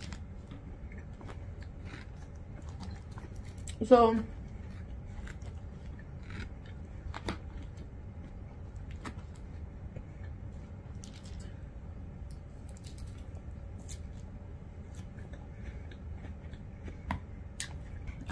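Eating sounds as salad is eaten with a fork: scattered small clicks and mouth noises over a steady low hum. A single spoken word comes about four seconds in.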